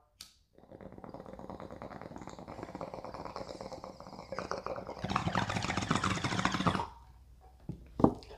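Water bubbling in a glass bong as smoke is pulled through it: a steady gurgle for about four seconds, then louder, faster bubbling for about two seconds that stops shortly before the end.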